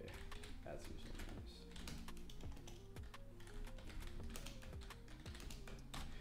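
Typing on a computer keyboard: a run of irregular key clicks, over quiet background music with steady, changing notes.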